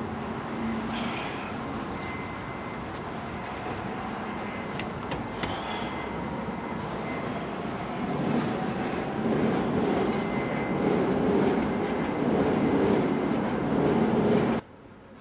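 Steady rumbling vehicle noise that grows louder about eight seconds in.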